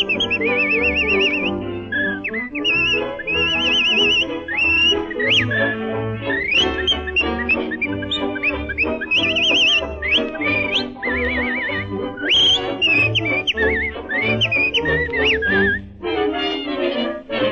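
A man whistling the song's melody with a wavering vibrato, scooping up into many of the notes, over a dance-band accompaniment with a pulsing bass, on a 1930 recording.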